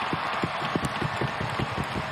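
Hockey arena crowd noise with a rapid, irregular run of low thuds, several a second.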